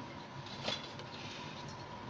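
Faint steady background noise with a thin steady tone, and one light click about two-thirds of a second in.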